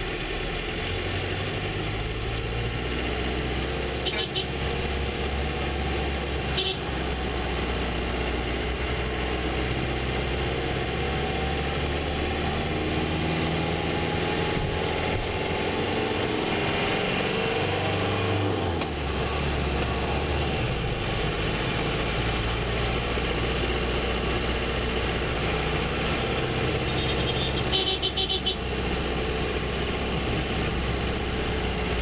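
Bus engine running as heard inside the cabin in slow, congested traffic, a low steady hum whose pitch shifts about two-thirds of the way through. A brief burst of high beeping comes near the end.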